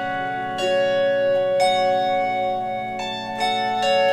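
Harp tuned to F♯ minor playing slowly, a new plucked note about every second, each left to ring on under the next.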